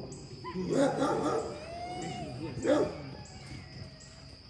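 Rottweiler barking in a couple of loud bursts, about a second in and again near three seconds in, with a short whine-like glide between them.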